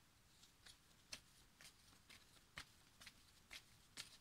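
Faint, irregular soft clicks and rustles of playing-size oracle cards being handled and shuffled in the hands, about two or three a second.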